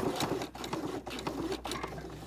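Domestic sewing machine sewing forward in a straight stitch, a fast, even run of needle strokes.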